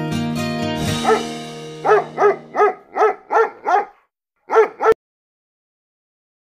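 Music fades out, then a quick run of about seven short yelps, each rising and falling in pitch, with two more after a brief gap.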